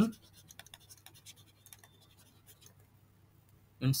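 Faint, irregular scratching and tapping of a stylus on a tablet's writing surface as a word is handwritten.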